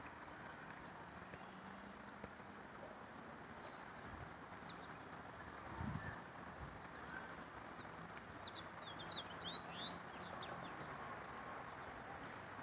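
Faint birdsong outdoors: a few high chirps, then a quick run of chirps about nine seconds in, over a quiet steady background. A soft low thump about six seconds in.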